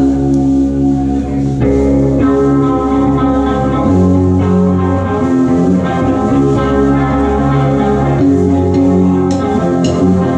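Live rock band playing an instrumental passage: electric guitars holding sustained chords over bass guitar and drums, the bass note changing every couple of seconds, with a couple of cymbal strokes near the end.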